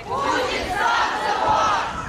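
A crowd of protesters shouting a slogan together, many voices merging into one loud chant.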